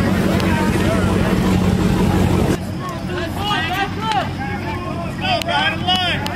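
Dodge Charger V8 running loudly and steadily close by. About two and a half seconds in it cuts abruptly to a quieter mix of crowd voices over engines idling in the distance.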